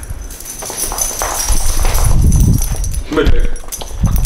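Low rumbling handling and shuffling noise with soft, indistinct voices as a small dog is called over and comes across the floor to the couch.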